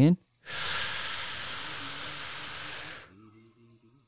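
A person's long, deep breath in, close to the microphone, lasting about two and a half seconds and fading out near the end.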